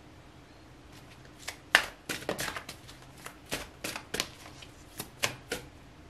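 A deck of divination cards being shuffled by hand: a string of irregular sharp card slaps and riffles that starts about a second and a half in.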